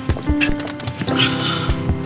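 Background music from a drama score: held notes over a light, regular clicking beat.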